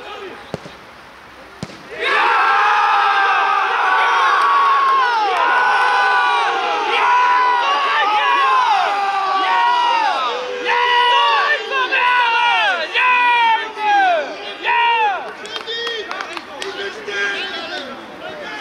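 A football struck in a shot about half a second in. From about two seconds a group of men yell and cheer loudly at a goal, with many overlapping long falling shouts that break into shorter separate yells after about ten seconds.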